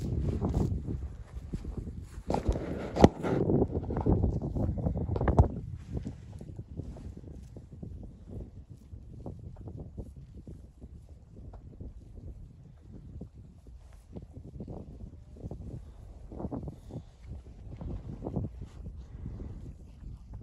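Snow crunching in short, irregular crunches several times a second. In the first five seconds there is a low wind rumble and a few louder knocks.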